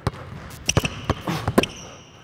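Basketball dribbled hard and low on a hardwood gym floor through an in-and-out crossover: a quick run of bounces at uneven spacing.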